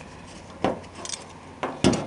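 Light metallic clicks and knocks from a sport mirror's metal base and clamp bracket being handled against a rusty steel piece. There are about four sharp clicks over the second half, the loudest one near the end.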